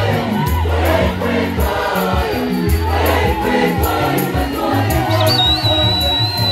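A choir singing with a live band: a moving bass line and a drum kit keep a steady beat under the voices. A thin, high held tone comes in about five seconds in.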